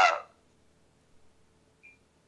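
A man's drawn-out 'uh' trailing off about a quarter second in, then a pause with only a faint steady hum and one short, faint high blip near the end.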